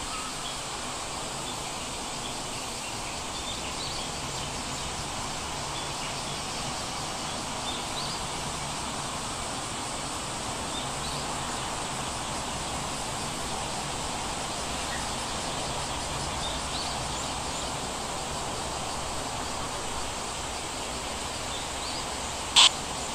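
Steady background hiss with no painting sounds, sprinkled with faint, brief high chirps.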